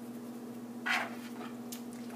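Pepper shaken over diced chicken in a plastic bowl: one brief rustle about a second in, over a steady low hum.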